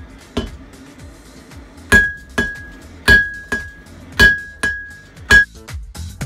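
Hammer forging hot steel on an anvil: sharp blows, each followed by a clear high ring from the anvil. After a light tap near the start, loud strikes begin about two seconds in, falling in pairs of a heavy blow and a lighter one, seven strikes in all.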